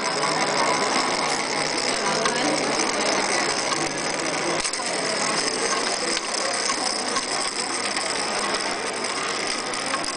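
Plastic toy spinning tops whirring and rattling against each other and the tabletop as they spin stacked, a steady rattling whir.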